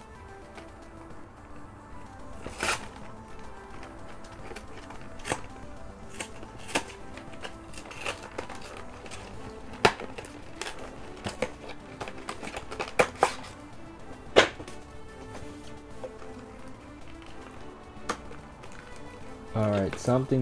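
Foil trading-card booster-pack wrapper being torn open and handled, a string of irregular sharp crackles and snaps, the loudest about halfway through and again a few seconds later, over quiet background music.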